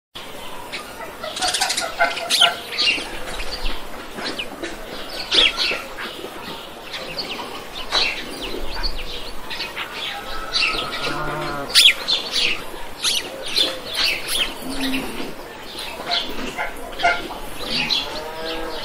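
Farmyard ambience: many small birds chirping throughout, with a lower farm-animal call about ten and a half seconds in.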